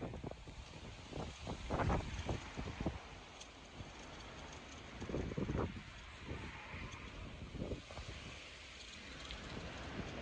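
Wind buffeting the microphone in irregular low rumbling gusts.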